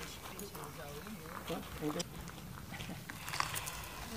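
Faint, distant voices of people talking, with a few light clicks.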